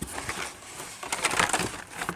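Carded die-cast toy car packages, cardboard backs with plastic blisters, rustling and scraping against each other and a corrugated cardboard case as they are pulled out by hand. The crinkling gets denser about a second in.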